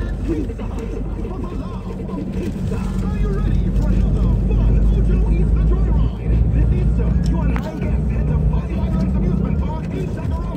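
Steady low road and engine rumble heard from inside a moving vehicle, with indistinct voices talking over it.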